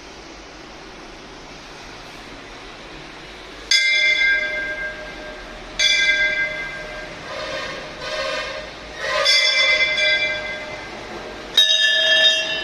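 Hanging temple bells struck several times, roughly every two seconds from about four seconds in. Each strike rings on with several clear tones before the next. Before the first strike there is only a faint room hiss.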